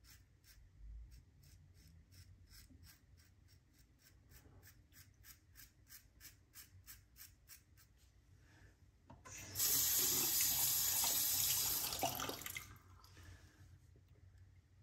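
Fine DE5 safety razor scraping through lathered stubble in short, quick strokes, about four a second, for the first eight seconds. A water tap then runs for about three seconds, much louder than the strokes.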